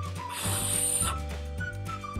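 A short breathy blow, under a second long, starting about half a second in: a birthday candle being blown out. Steady background music plays under it.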